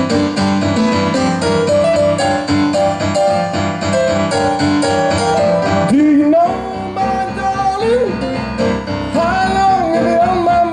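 Blues played on a Roland FP-50 digital piano, a steady rhythmic pattern of notes. A male voice comes in singing about six seconds in, with long held, sliding notes, and sings again near the end.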